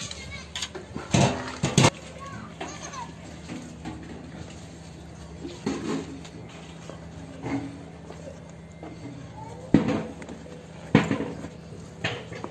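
Background voices of children and adults talking, with a few sharp knocks: two close together about a second in and two more near the end.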